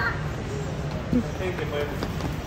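Steady background noise of a large store with a small child's short cries and squeals, one sharp rising-and-falling squeal about a second in.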